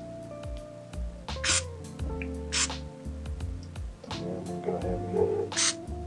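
Three short hisses from an aerosol can of PAM cooking spray, two about a second apart and one near the end, as oil is misted onto a plastic lacrosse head. Background music plays throughout.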